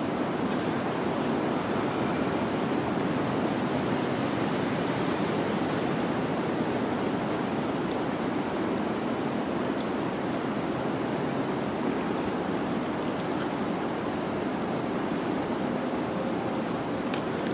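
Steady outdoor rushing noise, even and unbroken, with a few faint high ticks.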